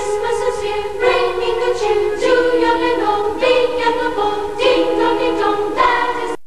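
Background choral music: several voices singing together in held chords that change about once a second.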